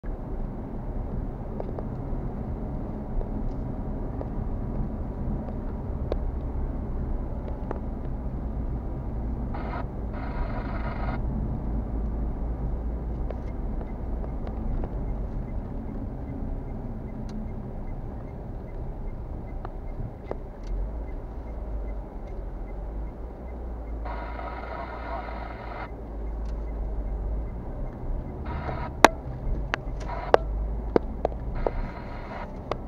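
A car driving at a steady moderate speed, heard from a dashcam inside the cabin: a low, steady rumble of engine and road noise. A few sharp clicks or knocks come near the end.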